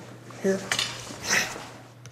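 A light metallic clink, then about half a second later a short, louder scrape from a metal straight sword (jian).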